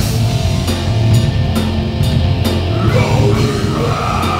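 Live heavy rock band playing loud: electric guitars, bass and a drum kit keeping a steady beat of about two hits a second, with a singing voice coming in near the end.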